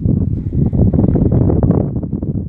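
Wind buffeting the microphone: a loud, low rumbling noise that starts suddenly.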